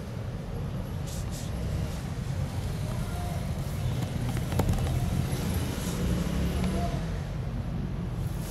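Steady low background rumble, with a single faint click about halfway through.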